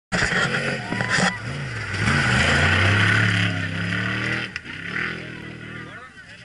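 Off-road race vehicle's engine running loudly as it passes close by at speed, its note wavering. The sound is at its loudest a couple of seconds in, then fades away over the last two seconds.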